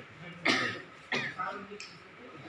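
A person coughs once, sharply, about half a second in, then brief murmured voices from the small group follow in a small room.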